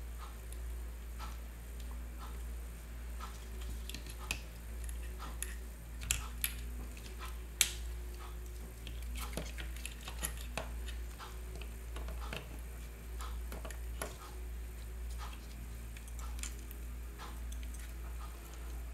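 Scattered light clicks and taps of hands handling a plastic RC car chassis and threading wire through it, with a few sharper clicks in the middle, over a steady low hum.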